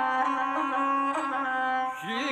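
Gusle, the single-string bowed folk fiddle, played on its own between sung verses of an epic song. It holds a steady melody that moves in small steps.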